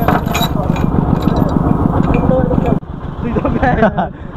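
Single-cylinder diesel engine of a công nông farm truck running with a rapid, even knocking beat. The sound drops sharply about three seconds in.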